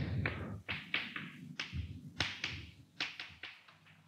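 Chalk writing on a chalkboard: about a dozen short, irregular taps and strokes as symbols are written.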